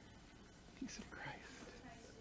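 Faint, murmured voices of a few people quietly greeting one another during the passing of the peace.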